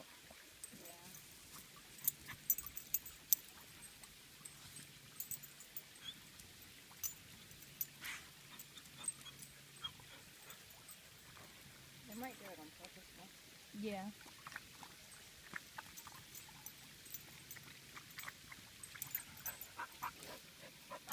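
A dog whining briefly in short pitched bursts, about twelve and fourteen seconds in, over faint scattered clicks and rustles.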